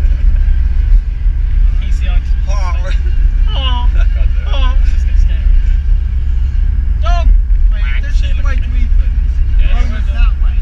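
Steady low rumble of engine and road noise inside a moving car's cabin, with passengers' voices breaking in between about two and five seconds in and again around seven to nine seconds.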